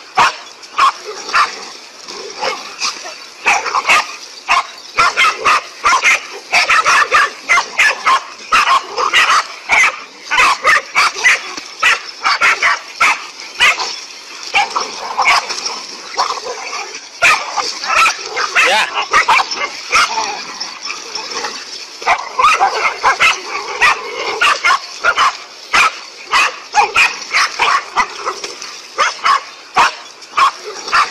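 Several dogs barking rapidly and without pause, barks overlapping, as the pack bays at a large snake it has surrounded.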